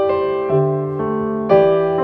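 Slow piano music, with a new note or chord struck about every half second, each one left to ring and fade.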